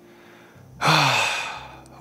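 A man's long, breathy, exasperated sigh ("ha..."), starting just under a second in, falling in pitch and fading away.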